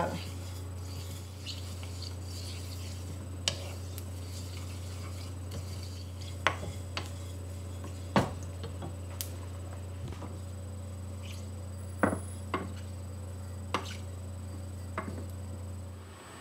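Wooden spoon stirring sesame seeds as they toast in a dry skillet, with about nine sharp clicks and taps scattered through, over a steady low hum.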